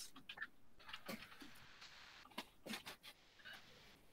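Near silence with a handful of faint clicks from a computer keyboard key being pressed.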